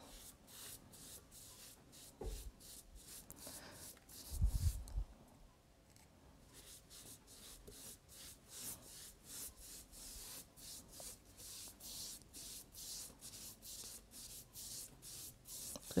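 Foam brush rubbing back and forth over wet watercolour paper: a faint, even swishing of about two to three strokes a second, with a short pause about halfway. A low thump about four and a half seconds in.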